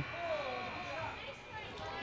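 Faint background voices of people talking in a gymnasium, with a faint steady high hum beneath them.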